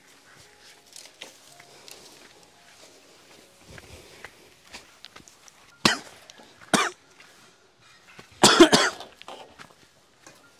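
A person coughing close by: two short coughs about a second apart, then a louder burst of coughing a couple of seconds later.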